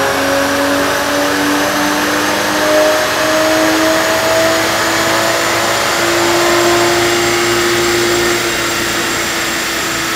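Toyota Supra's BMW-sourced turbocharged inline-six pulling under load on a chassis dyno, its pitch climbing slowly and steadily for about eight seconds, then levelling off as it eases near the end. A large shop cooling fan's steady rush runs underneath.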